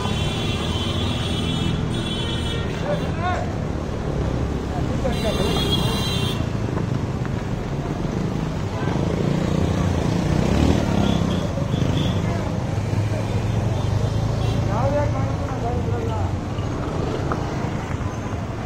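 Street traffic: engines of auto-rickshaws, scooters and cars running close by, with a passing vehicle swelling louder about halfway through, and passers-by talking. A high buzzing tone sounds twice in the first six seconds.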